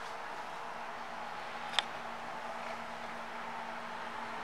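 Quiet indoor room tone: a steady hiss with a faint low hum, broken by one brief click a little before halfway.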